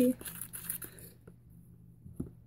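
Brief crinkly rustling from objects being handled, lasting about a second and then stopping.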